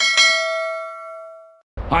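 A bell chime sound effect: one struck ding with several ringing overtones that fades and then cuts off suddenly about a second and a half in.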